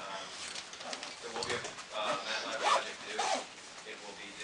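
A person talking in a lecture room, words indistinct, with short pauses.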